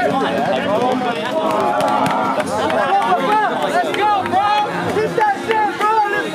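Crowd chatter: many overlapping voices of spectators talking at once, with no single voice standing out.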